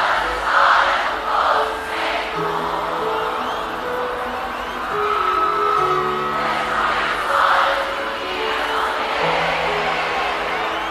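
Live forró band playing an instrumental passage of held chords that change every second or two, over a large crowd cheering and shouting, which swells near the start and again about seven seconds in.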